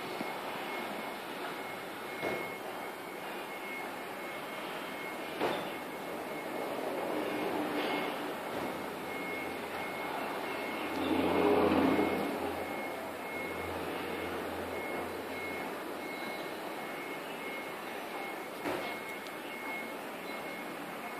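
Steady background traffic noise, with a vehicle passing louder a little past halfway through, and a few brief faint knocks.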